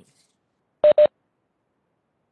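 Two short electronic beeps in quick succession, the same steady pitch each time.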